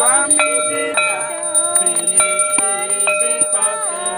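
Group of voices singing a Hindu aarti, with a hand bell rung repeatedly throughout, each strike leaving a steady ringing tone.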